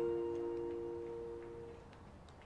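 Background music dying away: the last held notes of a slow song fade out over about two seconds, leaving a few faint ticks.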